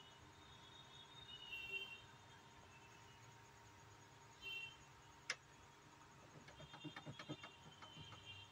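Near silence with a faint steady hum, broken by soft clicks of a soft starter's keypad buttons being pressed. There is one sharper click about five seconds in and a quick run of small clicks near the end.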